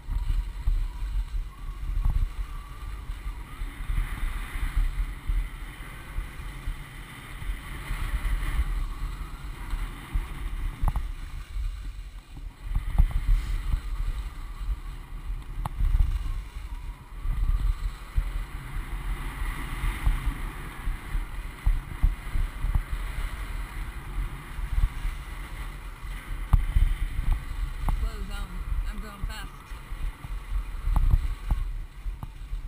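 Wind buffeting the microphone of a head-mounted camera while skiing downhill, a gusty rumble that swells and falls with speed, over the hiss of skis sliding on packed snow.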